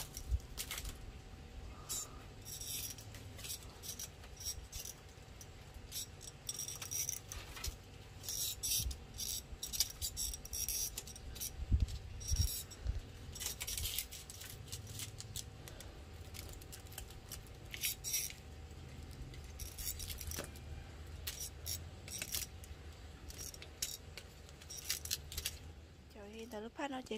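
Scattered light clicks and clinks at a metal grill rack of smoking fish, over a low rumble.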